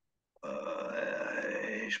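A man's long, drawn-out hesitation "euh", held steadily for about a second and a half after a brief dead silence, its pitch rising slightly.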